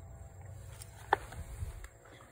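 Handling noise from a cordless rivet tool and loose blind rivets: a low rumble of movement with one sharp, short click a little past a second in and a couple of fainter ticks.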